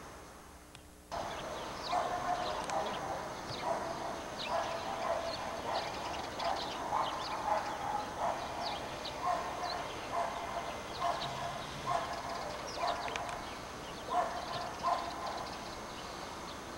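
An animal calling over and over in short calls, about two a second, starting suddenly about a second in, with faint high chirps above.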